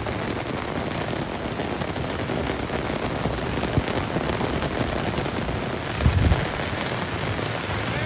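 Steady rain falling, mixed with the rush of muddy floodwater running in a stream. A brief low thump about six seconds in.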